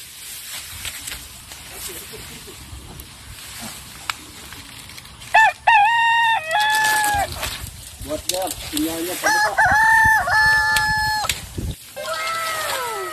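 Rooster crowing twice, a few seconds apart, each crow a long held call that drops away at the end, with a few lower clucking calls between them.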